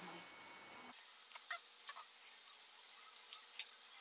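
Near silence: faint room tone with a few soft ticks, then two sharper clicks near the end.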